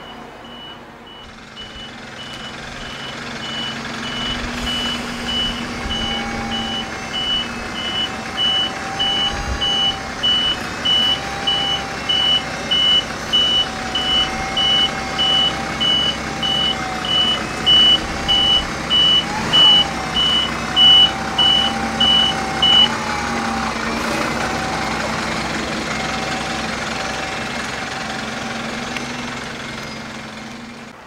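Irisbus (Iveco) city bus reversing slowly, its reversing alarm beeping about one and a half times a second over the steady hum of the diesel engine. The beeping stops about three-quarters of the way through while the engine keeps running.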